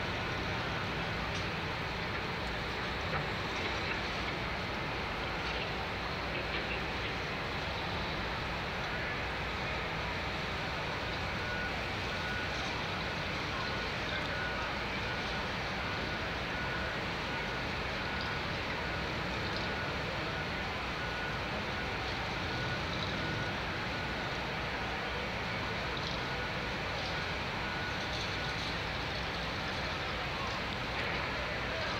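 Steady city street din of traffic and a crowd at a busy intersection, heard from a window above. Through much of the second half a faint high beep repeats quickly and evenly.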